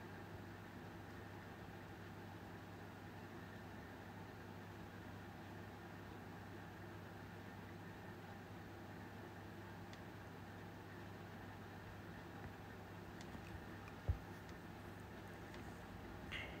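Faint, steady room tone: a low hum with light hiss. A few faint ticks come late on, and one short low thump about two seconds before the end.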